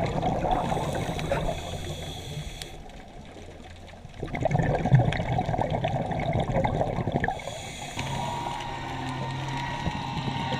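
Scuba diver's exhaled bubbles gurgling and rumbling past the microphone underwater, in two long bursts with a quieter gap between them. This is the sound of the diver's breathing cycle.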